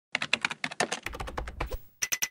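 Rapid keyboard-typing clicks, a quick run of keystrokes used as the sound effect for an animated logo, with a low hum underneath in the second half.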